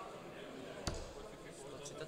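A steel-tip dart striking a Winmau Blade bristle dartboard once, a short sharp thud about a second in, over a faint background of voices in the hall.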